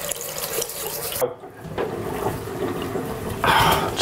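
Water running from a bathroom tap into a sink while a face is scrubbed and rinsed with the hands. The running water briefly dips a little after a second in and comes back louder near the end.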